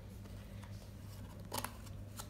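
Small craft scissors snipping card-stock paper, with one short snip about one and a half seconds in, over a low steady hum.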